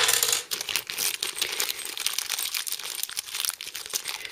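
Small clear plastic zip-lock bag crinkling continuously as hands turn and squeeze it, with its bagged metal mounting standoffs and small parts shifting inside.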